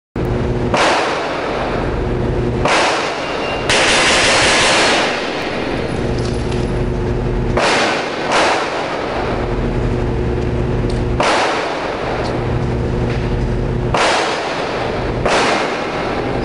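Pistol gunfire echoing in an indoor range: a rapid string of shots runs together into about a second of sound roughly four seconds in, which is the Bill Drill's six shots that the timer logs in 1.63 s with 0.18 s splits. Single shots ring out every few seconds, and a steady low hum sits underneath.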